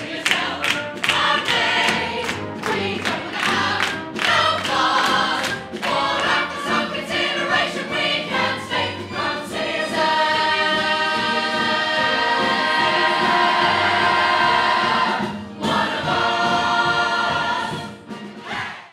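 A large mixed ensemble of adult and children's voices singing a show tune in full chorus, with moving words at first and then a long held note from about ten seconds in. It breaks off briefly and comes back as another held chord near the end.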